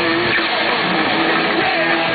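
Punk rock band playing live, with loud distorted electric guitars holding sustained chords.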